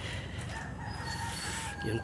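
Steady outdoor background noise with a faint, drawn-out bird call in the distance, typical of a rooster crowing.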